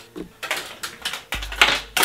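Clothes being handled: a quick run of light clicks and taps, then a louder rustle of fabric about a second and a half in.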